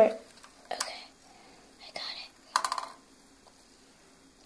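Soft speech, partly whispered, with quiet stretches between the words.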